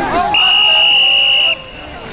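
A referee's whistle blown once: a steady, shrill, high tone held for a little over a second that cuts off sharply, blowing the play dead after a tackle pile-up. Crowd chatter and voices run underneath.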